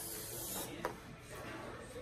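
A short hiss lasting a little over half a second, then a single sharp click just before the middle.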